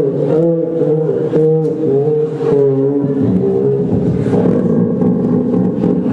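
Voices holding pitched notes together in harmony, shifting every half second or so, then turning rough and buzzing about halfway through.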